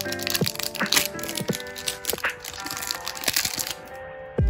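Foil booster-pack wrapper being torn open and crinkled, a scatter of short sharp crackles, over background music with held tones.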